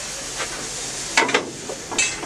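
Steady hiss of steam in the cab of GWR Castle class steam locomotive 5043.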